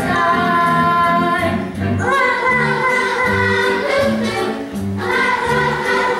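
A group of children singing a musical-theatre number together with instrumental accompaniment, holding long notes over a steady repeating bass line.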